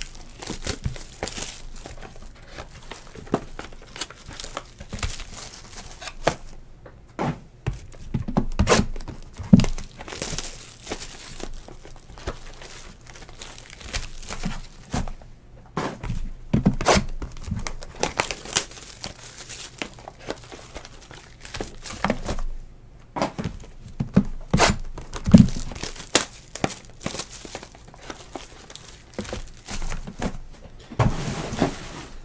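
Hands handling sealed trading-card boxes: plastic wrap crinkling and tearing, with irregular clicks and a few louder knocks as boxes are set down on the desk, the loudest about ten seconds in and about twenty-five seconds in.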